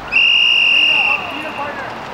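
Referee's whistle blown once: a single steady blast about a second long that then tails off.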